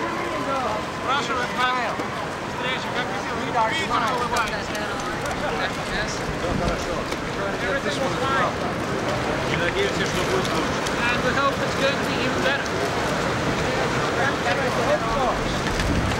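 Indistinct chatter of several voices talking at once, with wind buffeting the microphone.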